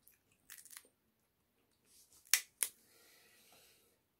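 A boiled shrimp's shell cracked and peeled by hand: a few small crackles about half a second in, two sharp snaps a little past halfway, then a soft rustle for about a second as the shell comes away.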